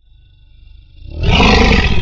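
Lion's roar sound effect: a low rumble that swells into a loud, full roar about a second in.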